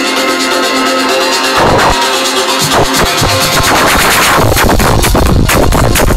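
Electronic dance music from a DJ set played loud over a PA: a breakdown of sustained synth chords with no bass, then the bass and a steady kick drum come back in about halfway through.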